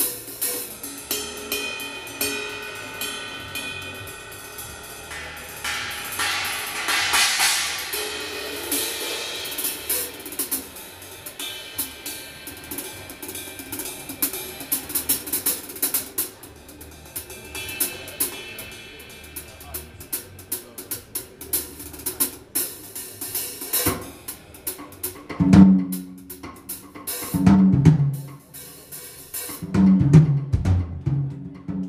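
Ludwig drum kit played solo in a jazz style: busy cymbal and hi-hat work with snare hits and a bright cymbal crash, moving near the end to loud strikes on the low toms.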